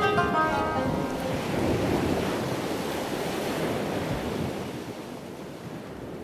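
Ocean surf breaking and washing on a beach, gradually fading toward the end, with the last qanun notes ringing out during the first second or so.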